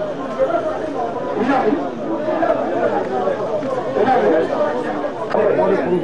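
Indistinct chatter of many people talking at once, running steadily with no pause.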